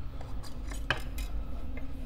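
A few light clicks and taps from hands gripping and turning the top adjustment ring of a Turin DF83 coffee grinder to lift it off, with one sharper click about a second in.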